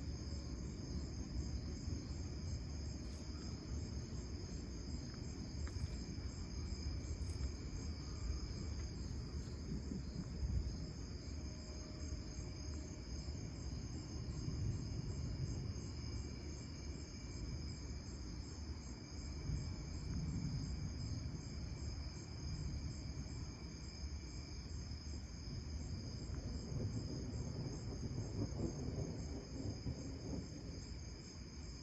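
A steady chorus of night insects, crickets chirping in a continuous high pulsing drone. Underneath it a low rumble swells and fades at times.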